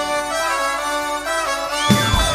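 Live rock band with a symphony orchestra playing an instrumental passage without singing. The drums and bass drop out, leaving a stepping melody over held chords, then the full band comes back in with a hit near the end.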